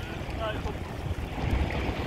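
Wind buffeting the microphone as a low, uneven rumble, over a faint wash of sea water.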